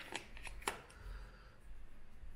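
Light clicks and handling rustle as a phone battery is pressed into its plastic compartment and the phone is handled, with a few small clicks in the first second, the sharpest just under a second in.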